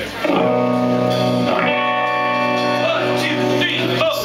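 Rock band starting a song live: electric guitar and held chords ringing, changing every second or so.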